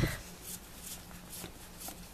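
Faint rustling and light flicks of Pokémon trading cards slid one past another as a handful is flipped through.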